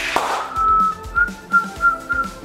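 A woman whistling one steady, held note through pursed lips, with a sharp breathy burst just before it. Background music plays underneath.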